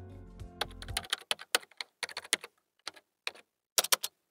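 Computer keyboard typing: a quick, irregular run of key clicks. It follows the tail of background music, which stops about a second in.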